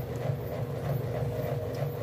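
Washing machine running with a steady low drone and a faint constant tone above it.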